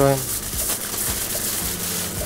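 Aluminium foil crinkling and rustling as it is rolled tightly around a chicken roll.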